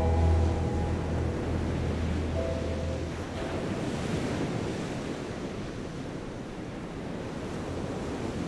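Sea surf washing onto a beach: a steady rushing hiss of waves, with wind.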